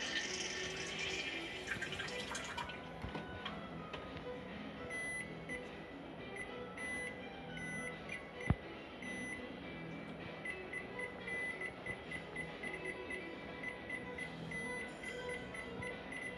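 Water spray from a TOTO Washlet SB bidet nozzle hissing for the first couple of seconds, then stopping. After that, background music with a repeating pattern of short notes, and a single sharp click about eight and a half seconds in.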